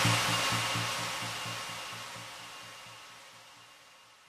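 Closing tail of an electro house track: after the last hits, a hissy wash and a fast, even low pulsing fade out steadily, dying away about three and a half seconds in.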